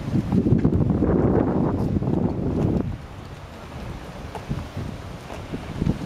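Wind buffeting the camera's microphone: a low rumble that drops off about three seconds in, leaving a quieter wind hiss.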